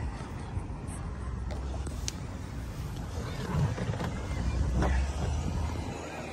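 Low rumble of wind and movement on a phone microphone as an electric golf cart moves off along a concrete cart path, growing a little louder for a couple of seconds past the middle.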